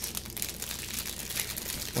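Thin plastic snack-cake wrapper crinkling with many small crackles as it is handled and opened.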